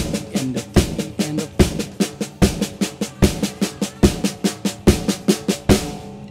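Drum kit playing a steady groove: even sixteenth notes with both sticks on the snare drum, and the bass drum on every quarter note. The tempo is slow, about 73 beats a minute.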